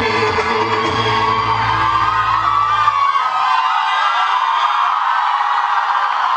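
Loud dance music over a hall's sound system, its bass dropping out about three seconds in as the song ends. An audience whooping and yelling carries on over the rest.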